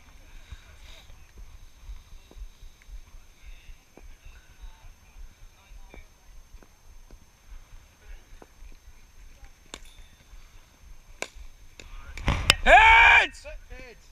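Low wind rumble on a body-worn camera microphone with a few faint distant knocks of cricket bat on ball, then, about twelve seconds in, a sharp crack and a loud shouted call held for about a second.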